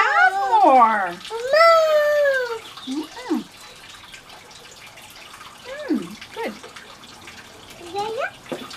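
Toddler whining in two drawn-out, high-pitched wavering cries over the first few seconds, then a few short squeaks. A steady hiss runs underneath.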